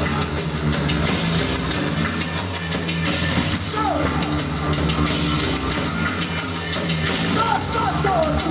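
Live industrial/neofolk band playing loud and steady: bass guitar and a drum kit with cymbals, with a vocalist at the microphone.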